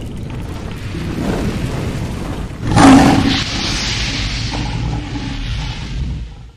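Cinematic logo-intro sound design: a deep rumble that swells into a loud roar-like burst about three seconds in, followed by a long fading rush of noise.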